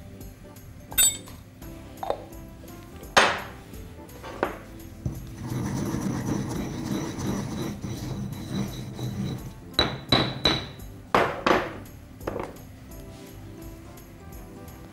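A stone pestle in a granite mortar: a few sharp knocks, then about four seconds of grinding a dry granular mix. Near the end come several quick hard strikes with a ringing clink.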